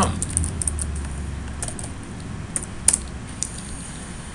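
Typing on a computer keyboard: scattered keystroke clicks, with one louder click near three seconds in.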